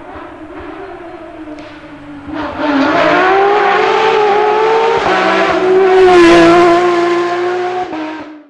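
Rally car engine running hard: the note gets much louder and climbs in pitch about two seconds in, then holds high with small rises and falls in pitch.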